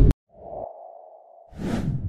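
Editing sound effects for an animated title card. A loud hit cuts off at the very start, then a steady electronic tone sets in. A whoosh swells over the tone about a second and a half in as the title box appears.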